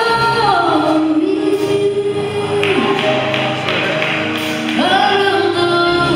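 Children singing a gospel song into microphones in long held, gliding notes over a steady backing, with a run of light taps in the middle.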